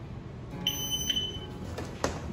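Shot timer start beep: a single high-pitched electronic tone lasting almost a second, starting about half a second in. It is the signal for the airsoft shooter to draw and fire.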